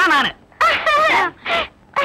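A person's voice making wavering, drawn-out wordless vocal sounds in about three short bursts.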